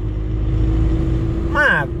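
Steady low rumble of engine and road noise inside a moving vehicle's cabin, with a steady hum running through it.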